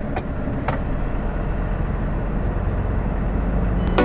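HGV car transporter's diesel engine and tyre noise heard from inside the cab as the truck drives forward, a steady low rumble. Two sharp clicks sound within the first second.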